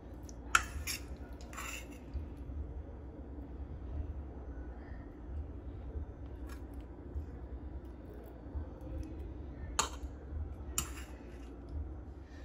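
Kitchen handling sounds as sliced bell peppers and onions are served into a pineapple bowl: a few sharp clicks of a serving utensil near the start and again near the end, over a steady low rumble.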